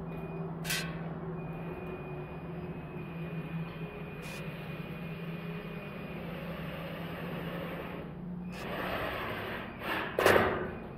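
Cordless drill/driver driving screws into a ceiling diffuser, heard over a steady low hum. Two short clicks early, then a longer, louder whirring stretch near the end.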